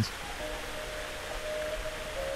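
A steady low hiss with a few faint, held musical notes over it.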